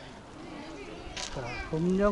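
Quiet outdoor background with a brief hiss a little past halfway, then a man's voice begins near the end.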